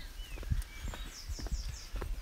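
Footsteps and phone handling while walking, with a bird singing: a short chirp near the start and a quick run of about five high notes a little after the middle.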